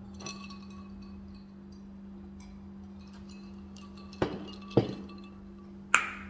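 Three short clinks near the end, the last the loudest, over a steady low hum and faint music.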